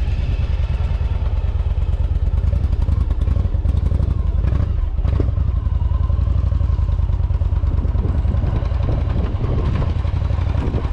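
Yamaha V Star 1100 Silverado's air-cooled V-twin engine running steadily as the cruiser rides along at low speed, a deep low rumble heard from the pillion seat.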